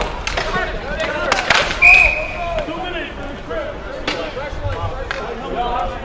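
Roller hockey sticks and puck clacking on a sport-court rink amid players' shouts, with a referee's whistle blown once for about a second, about two seconds in.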